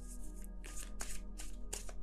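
A deck of tarot cards being shuffled by hand: a quick run of short card strokes, about four to five a second. Soft background music with held notes plays underneath.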